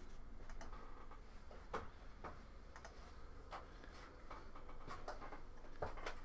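Faint, scattered light clicks, about a dozen at irregular intervals, over a low steady hum.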